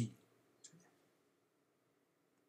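A man's voice trails off at the start, then a single faint, short mouth click about two-thirds of a second in, with silence around it.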